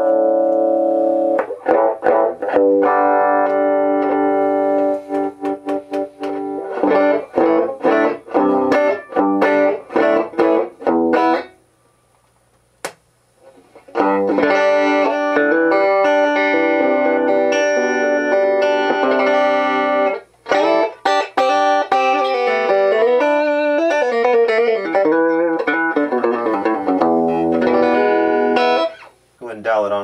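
Electric guitar played through a freshly modified 1968 Fender Bassman tube amplifier into a test speaker, the amp's first play-test after the gain and tone-stack mods. Chords and single notes ring out, stop for about two seconds midway with a single click, then resume.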